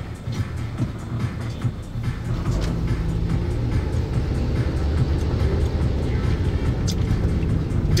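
Inside a car cabin: engine and road noise build from about two seconds in as the car pulls away and gathers speed, then hold steady. Music plays along underneath.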